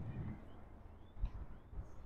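Quiet outdoor ambience with faint bird chirps and a few soft low thumps in the second half.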